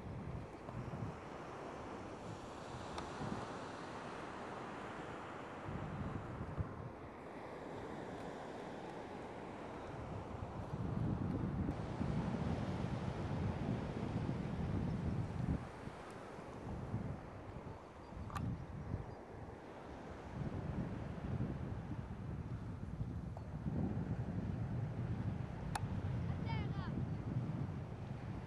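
Wind buffeting the microphone in gusts, a rumbling noise that swells and eases and is heaviest in the middle of the stretch and again near the end. No motor is heard.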